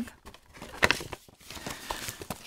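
Kraft paper bag rustling and crinkling as it is handled, with a sharper crackle just under a second in.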